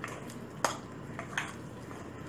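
Bread dough being stirred with a utensil in a glass bowl: soft scraping with a few sharp clicks of the utensil against the glass, the loudest about two-thirds of a second in.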